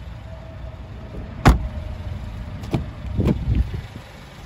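A single sharp knock about a second and a half in, then a couple of faint clicks and a short dull thud near the end, over a steady low rumble.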